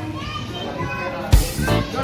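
A young child's voice and other voices over background guitar music, with a sharp beat or knock about a second and a half in.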